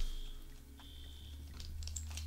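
Faint clicks of a phone in a rugged case being handled on a metal bike phone mount, a few near the end, over a low steady hum.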